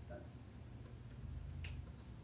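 Quiet room tone with a low steady hum, broken by one faint, sharp click a little after halfway through.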